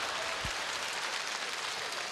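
Studio audience applauding after a joke, the clapping gradually dying down.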